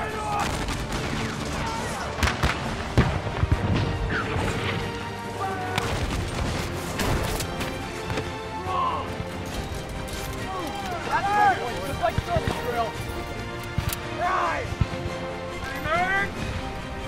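Scattered shots from muzzle-loading rifle muskets in a firefight, coming in loose clusters, with men shouting and yelling over them and background music underneath.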